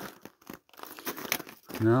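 Irregular crunching and crackling of footsteps on hard, crusty snow, with a few sharp crackles. A man's voice starts speaking near the end.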